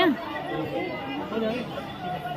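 Quiet voices talking in the background, softer than the close speech just before and after.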